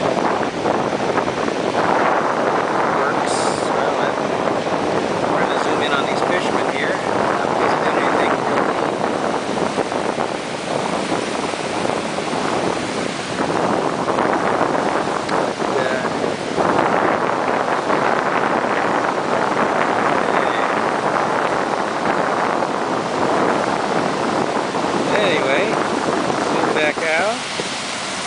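Surf breaking and washing over a rocky reef shoreline as a continuous rushing noise that swells and eases, with some wind on the microphone.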